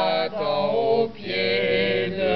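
Unaccompanied voices singing a chorale in long held notes, breaking off briefly twice.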